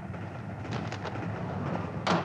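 Steady low rumble of a railway carriage in motion, heard from inside the compartment, with a few faint clicks.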